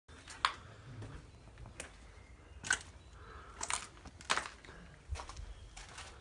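Slow footsteps crunching over debris on a littered floor, about one step a second, with the room's hollow echo.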